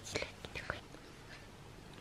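A person whispering a few soft words in the first second, then only faint room noise.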